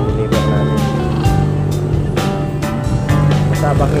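Background music with a beat of repeated drum strokes and pitched instrument notes.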